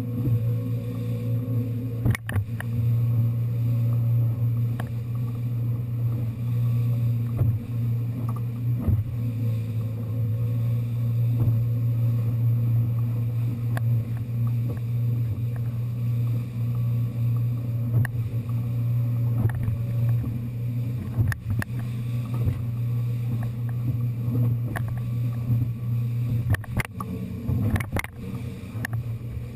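Boat engine running steadily under way, with water rushing along the aluminium hull and a few sharp knocks as the hull slams into the chop.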